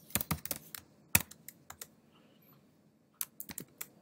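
Typing on a computer keyboard: a quick run of key presses over the first second or two with one sharper, louder keystroke, a pause, then a few more keys in quick succession near the end.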